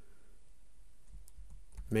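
A few faint keystrokes on a computer keyboard as code is typed.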